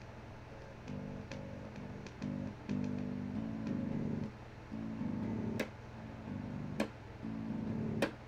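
Budget electric bass, strung with aftermarket strings that are softer and less twangy than stock, played through its small bundled amp: a run of single plucked notes starting about a second in. There are two sharp clicks near the middle, and a steady low hum runs underneath.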